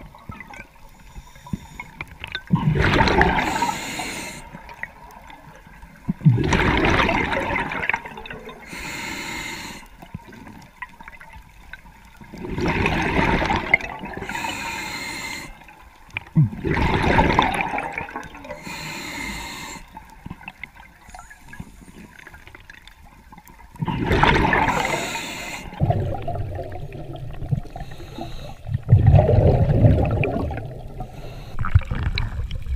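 Scuba diver's exhaled breath bubbling out of the regulator underwater: a rhythmic series of about six bubbling bursts, each lasting a second or two and coming roughly every four seconds, with quieter water sound between.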